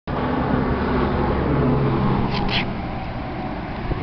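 Road traffic passing: a vehicle engine's steady drone, loudest in the first two seconds and then easing off, with two brief high rasps about halfway through.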